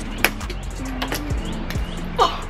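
Fidget spinner hitting cement with a sharp clack about a quarter second in, then a second, smaller knock about a second in as it bounces, over background music.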